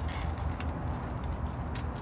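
An asphalt shingle being slid and pressed into place by hand on the roof deck: a few faint scrapes and light taps over a steady low rumble.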